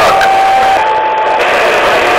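Two-way radio receiver putting out loud hiss with a steady whistle running through it. The whistle steps up in pitch just under a second in, then drops back half a second later.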